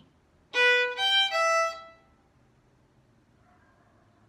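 Violin playing three short bowed notes in a row, one A, low two on E, open E (B, G, E), lasting about a second and a half.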